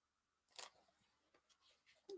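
Near silence: quiet room tone, with one brief soft click or rustle about half a second in.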